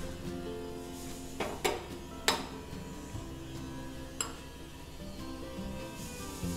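Background music with a few sharp clinks of a metal spoon against a glass bowl as melting dark chocolate is stirred over a double boiler. There are four clinks, the loudest about two seconds in.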